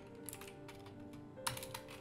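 Computer keyboard typing: a quick run of light key clicks, with one louder click about one and a half seconds in.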